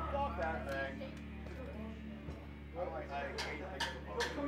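A quiet lull in a live band set: indistinct voices talking over a steady low electrical hum, with a few faint clicks near the end.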